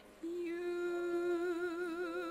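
A solo voice singing a hymn, holding one long note with vibrato that begins about a quarter second in.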